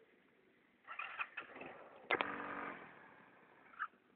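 Yamaha Mio scooter engine revving in short bursts, the longest and loudest about two seconds in, then fading as the revs drop.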